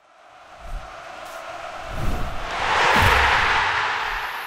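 Logo-sting sound effect: a whoosh of noise that swells to its loudest about three seconds in, with deep booms underneath, and begins to fade near the end.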